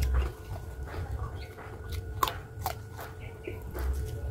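Crisp unripe green mango being bitten and chewed close to the microphone, with two sharp crunches a little past halfway through.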